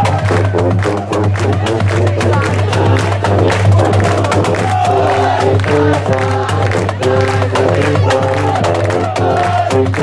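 Drum and bugle corps playing live: the brass line sounds held chords, carried by large bass horns, over a busy beat from the marching drums.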